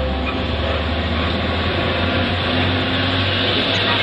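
A truck's engine running as it drives past, a low steady hum over a haze of road and traffic noise.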